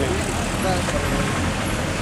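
Steady traffic noise, a continuous rumble with no clear events.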